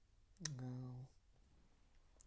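Speech only: a single drawn-out spoken "Oh" about half a second in, starting with a short click, over quiet room tone.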